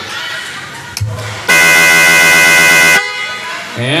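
A basketball game horn sounds one steady, loud blast of about a second and a half, about halfway through, signalling a timeout. Before it there is low crowd noise.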